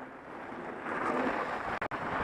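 Steady rushing noise of skiing downhill with a helmet-mounted camera: wind on the microphone and skis sliding on groomed snow, with a brief dropout near the end.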